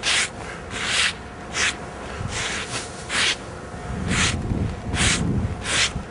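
A broom sweeping across a flat coated roof surface in about eight short, scratchy strokes, clearing debris before the area is coated.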